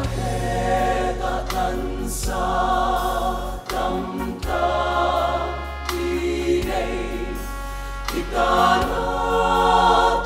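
Mixed choir of women's and men's voices singing a gospel hymn in harmony, the chords changing every second or so over a steady low accompaniment.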